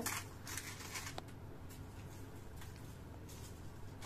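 Faint scratchy rubbing as fingers scrub silver jewellery with baking soda powder against aluminium foil, with a few soft scrapes mostly in the first second or so.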